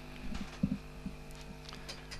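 A quiet pause with a steady electrical hum in the background, and a couple of faint short sounds about half a second in.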